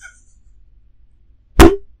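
A single loud thump as the desk microphone is knocked by a hand, about one and a half seconds in.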